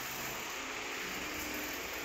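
Steady low hiss of indoor room tone, with no distinct event.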